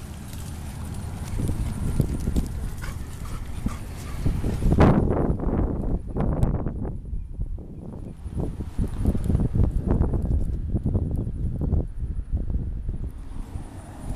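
Footsteps treading on dry grass and sandy ground with irregular thumps, and the camera jolted hard about five seconds in; after the jolt the sound is duller for most of the rest.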